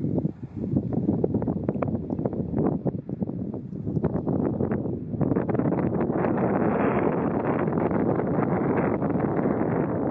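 Wind buffeting the microphone: a rough rushing noise, gusty at first and steadier from about halfway.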